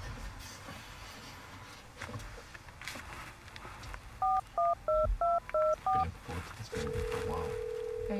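Phone keypad dialing tones: six quick two-note beeps about a third of a second apart, then one steady ring tone of about a second and a half as the call goes through.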